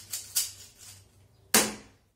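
Plastic Rubik's cube clicking as its faces are turned by hand: a few short clicks in the first second. About one and a half seconds in comes a single much louder sharp crack that fades over about half a second.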